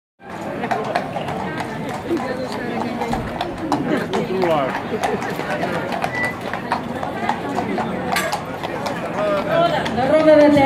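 A horse's hooves clip-clopping on a paved street as it draws a carriage past, mixed with a crowd chattering.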